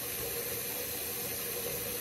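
Tap water running steadily into a bathroom sink, an even hiss.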